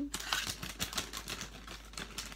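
Scissors snipping through the top of a foil-plastic blind bag, a quick run of sharp snips and clicks with the foil packet crinkling in the hand.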